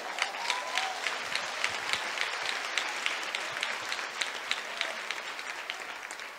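Audience applauding, many hands clapping, with a voice calling out in the first second; the applause fades toward the end.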